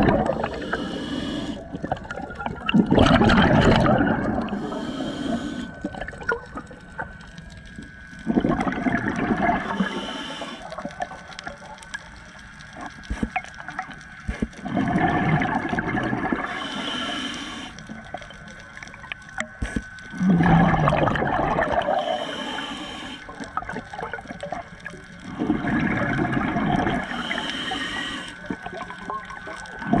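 Scuba diver breathing through a regulator underwater: a high hiss on each inhale, then a loud gurgling rush of exhaled bubbles, repeating about every five to six seconds.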